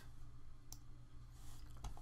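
Two quiet computer mouse clicks about a second apart, over a faint steady hum of room tone.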